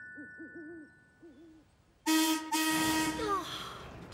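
A held music chord fades out over faint soft sounds. About two seconds in, a loud steam whistle blows for about a second and a half over a hiss of steam, its pitch falling away as it stops.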